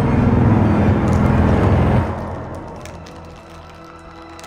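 A loud, deep rumble that cuts off abruptly about two seconds in and dies away, leaving a quiet, sustained, eerie musical drone with a few faint crackles.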